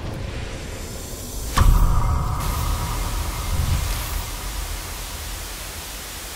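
Logo-sting sound effect: a static-like hiss with a sudden low hit about a second and a half in, carrying a short high tone, then slowly fading away in hiss.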